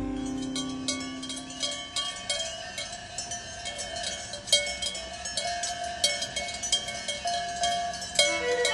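Cowbells clanking irregularly, several bells ringing at different pitches, as the last chord of a guitar piece fades out in the first two seconds.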